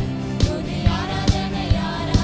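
Live worship band playing an upbeat song: electric guitar, bass and keyboards over a steady drum beat a little over twice a second, with a man singing the lead into a microphone.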